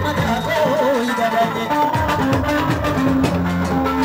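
A woman singing into a microphone over amplified band music, her voice wavering in an ornamented line about half a second in, with percussion coming through more plainly in the second half.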